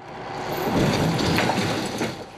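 Rushing vehicle noise, as of a passing vehicle, swelling over the first second and fading near the end.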